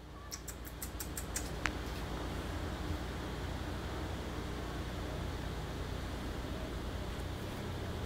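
Steady low hum of indoor room noise, with a few faint clicks in the first second or so and a brief faint tone shortly after.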